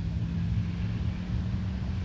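A steady low rumble with a thin, even hum running under it.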